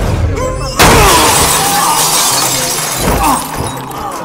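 Car windscreen glass shattering: a sudden crash about a second in, then breaking glass that fades over the next two seconds, with film music underneath.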